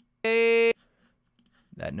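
A single sung vocal note auditioned from a Melodyne note blob. It plays at one steady pitch for about half a second and cuts off abruptly.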